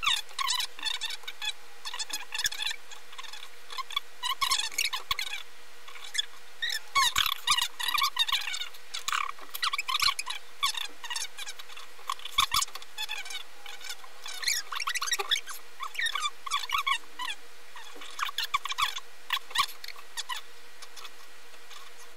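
High-pitched, squeaky chatter and laughter of two people's voices sped up, as on fast-forwarded footage, with a faint steady hum underneath.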